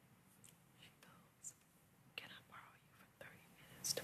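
Faint, hushed whispering: a few soft breathy words with sharp hissing 's' sounds scattered through, over quiet room tone.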